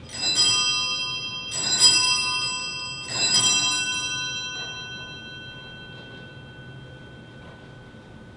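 Wall-mounted brass sacristy bell of three small bells, shaken three times about a second and a half apart. After each shake the chimes ring on and slowly fade over the next few seconds. It is the bell rung as the priest enters to begin Mass.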